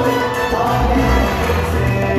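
Dance music playing loudly and continuously, with a strong bass line and sustained string-like notes.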